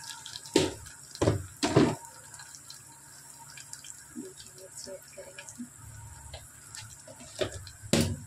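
Oil sizzling and crackling under fried onions in an aluminium pressure cooker. There are a few louder sharp pops or knocks, three in the first two seconds and more near the end.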